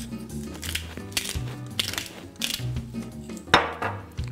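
Pepper being ground over a pot of soup in a few short rasps, with one louder knock about three and a half seconds in, over soft background music.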